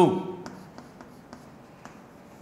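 Chalk writing on a blackboard: a few light taps and scratches as characters are chalked.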